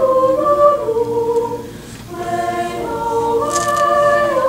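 Mixed-voice choir singing sustained chords that move from one to the next, dropping softer about halfway through and swelling back up. A brief sibilant hiss from the singers' consonants comes near the end.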